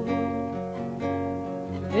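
Nylon-string classical guitar alone, strumming chords that ring on in a cielito-style accompaniment between sung verses.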